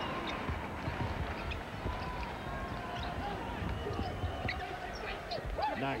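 Basketball game sound from the court: a ball being dribbled and short sneaker squeaks on the hardwood, over a steady murmur from the arena crowd.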